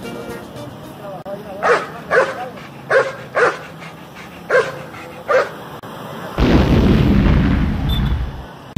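A dog barking six times, singly and in pairs, over faint street background. From about six seconds in, a loud steady rushing noise, the loudest sound here.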